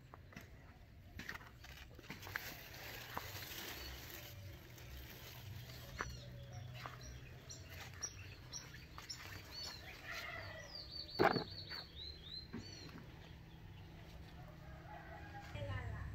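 Quiet outdoor sound of birds chirping in short, scattered calls, with one sharper, louder call about eleven seconds in, over light clicks and rustling.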